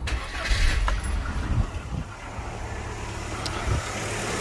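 A Rover's engine being started: it fires up with a loud low rumble in the first second or two, then settles into a steady idle. A short thump near the end.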